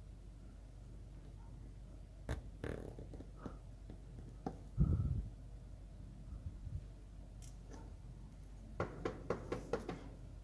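Faint scattered clicks and taps of a flat screwdriver working the plastic drip-rate adjustment screw of a pneumatic lubricator as the oil feed is set, with a soft low thump about five seconds in and a quick run of clicks near the end as the screwdriver comes off.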